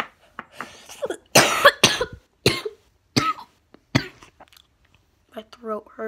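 A person coughing, about five short coughs spread over a few seconds, the loudest pair about a second and a half in. He has a snuffy nose and might be getting a little sick.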